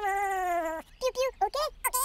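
A high, cute cartoon character voice making wordless sounds. First comes one long cry that slowly falls in pitch, then after a short pause a few quick chirpy syllables.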